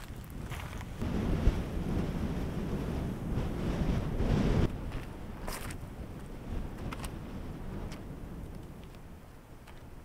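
Wind buffeting the microphone: a low rumble, loudest in the first half, that drops away suddenly a little before the middle. After that there is a softer wind hiss with a few faint clicks.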